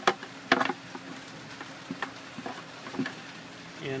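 Hard plastic clicking and knocking as black quarter-inch drip tubing is worked into a hole in a plastic bucket's rim: two sharp clicks in the first second, then a few fainter ticks.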